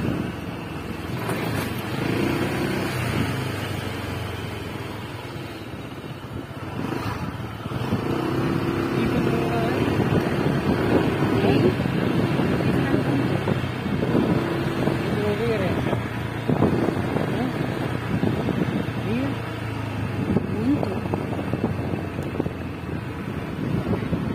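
Small motor scooter engine running while riding along a street, with wind on the microphone.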